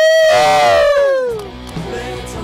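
A loud long held vocal note, with other voices sliding down in pitch under it and fading after about a second and a half, as rock music comes in.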